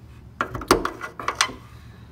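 Steel hood prop rod on a Suzuki Carry mini truck being swung up and seated in the hood, giving a quick run of metallic clicks and clacks about half a second in, the last ones near a second and a half.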